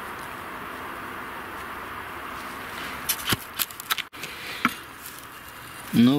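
A steady hiss, then, about halfway in, a short run of clicks and scrapes: stony soil being worked with a small hand hoe-cultivator.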